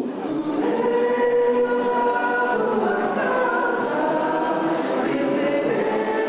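A choir singing a hymn in long, held notes.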